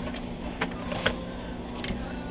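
Stacked plastic colander baskets knocking against each other as one is pulled from the pile: a few short sharp clacks, the loudest about a second in, over a steady low hum.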